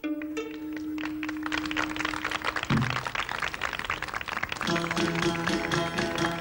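Cretan folk dance music on plucked and bowed strings: a new tune begins on one long held note over fast plucked strumming, and a stepping bowed melody comes in about five seconds in as the dance starts.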